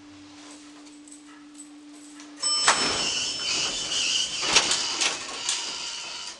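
Fujitec traction elevator at a landing: a steady low hum, then about two and a half seconds in the car doors slide open with a sudden louder rush of noise carrying thin high tones and a couple of sharp knocks.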